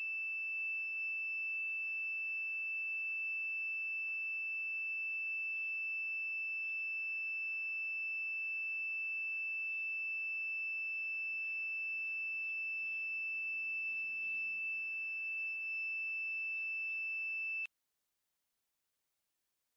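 Piezo buzzer on an ESP8266 soil-moisture monitor sounding one steady high-pitched tone: the low soil-moisture alarm. It cuts off suddenly near the end.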